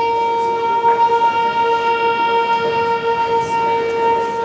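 A wind instrument, or the wind band in unison, holding one long, steady note on a single pitch with no change in pitch, sounding for about four seconds.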